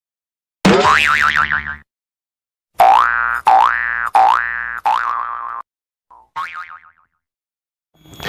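Cartoon 'boing' sound effects in an animated logo intro: one wobbling boing, then four quick rising boings in a row, and a fainter one near the end.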